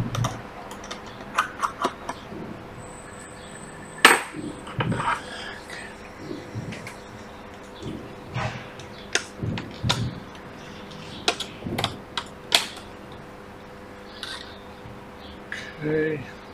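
A small metal pry tool clicking and scraping against the cover over an iPad Pro 10.5's logic board as the cover is pried up and lifted off. The clicks are irregular, with the sharpest one about four seconds in.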